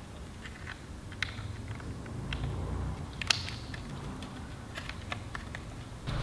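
Light plastic clicks and taps of small wiring connectors being handled and plugged in by hand: a few scattered clicks, the sharpest about three seconds in.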